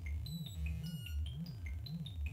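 Modular synthesizer patch: a low oscillator tone sweeping up and down in pitch about twice a second, LFO frequency modulation, under short high blips that jump to a new random pitch several times a second as a sample-and-hold, clocked by an LFO pulse, steps a second oscillator.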